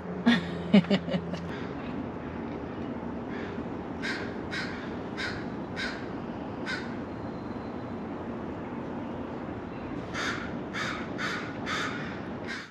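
A crow cawing in two runs of short harsh caws, about two a second, one in the middle and one near the end, over a steady outdoor background hum.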